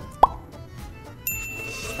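Comic editing sound effects: a quick rising 'bloop' pop about a quarter second in, then a high bright ding that starts just past the middle and keeps ringing.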